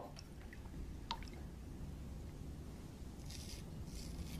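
Quiet room tone with a low steady hum and a few faint small clicks; about three and a half seconds in, a brief soft scrape of a straight razor drawn over lathered skin.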